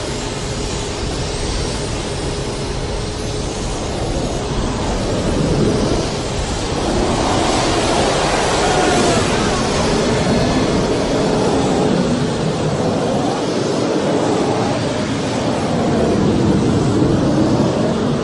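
Twin MiG-21 jet engines of the Big Wind fire-fighting vehicle running at high power, a steady loud roar as water is injected into their exhaust stream to blow out an oil-well fire.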